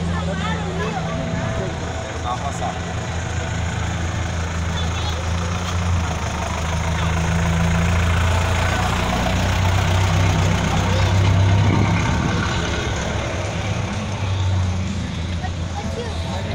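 An engine idling steadily, a low hum that swells a little midway, under the chatter of a crowd.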